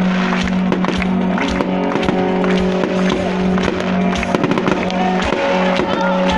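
Aerial fireworks bursting and crackling in quick succession, many sharp bangs, over loud music with long held notes.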